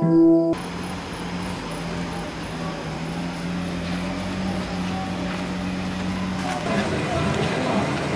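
A handpan's ringing notes cut off abruptly about half a second in, giving way to a steady low hum over hiss. Near the end a busier, noisier mix with voices comes in.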